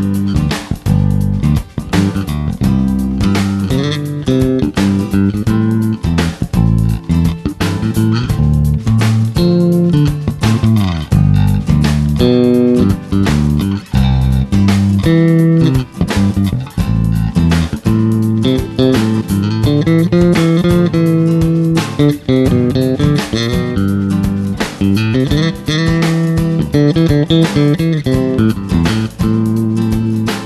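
Fingerstyle electric bass guitar, a Jazz-style bass, playing a continuous line of plucked notes with some sliding pitches, over a backing track with a steady beat.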